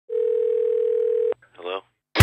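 A steady electronic beep tone, one pitch held for just over a second, cut off abruptly with a click. A brief voice sound follows near the end.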